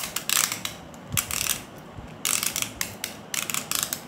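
Plastic Beyblade launcher ratcheting in four short bursts of rapid clicking, being readied for the next round.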